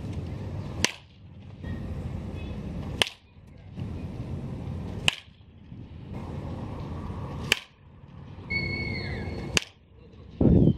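Baseball bat hitting tossed balls in batting practice: five sharp cracks of bat on ball, about two seconds apart.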